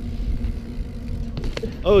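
Low, steady rumble of riding a BMX bike along a concrete path, tyre noise and wind on the helmet-camera microphone, with a couple of sharp clicks about a second and a half in.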